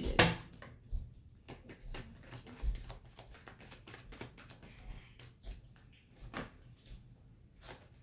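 A deck of cards being shuffled by hand: an irregular run of soft clicks and taps as the cards slide and slap against each other.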